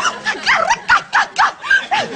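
A quick run of short, high yelps, about three to four a second, each one sliding in pitch.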